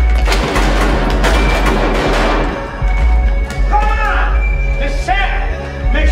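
Grime/drill track playing loud through a club sound system, with a heavy sub-bass line throughout. For the first two and a half seconds a dense wash of crowd noise sits over it, then it thins and a rapped vocal in the track comes through.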